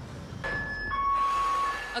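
Car alarm sounding, set off while thieves cut the catalytic converter from under the car. It comes in about half a second in as a steady high electronic tone, switches to a lower tone, and returns to the higher one near the end, over a hiss of street noise.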